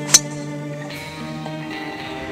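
A single sharp crack of a driver striking a golf ball off the tee, just after the start, over background music.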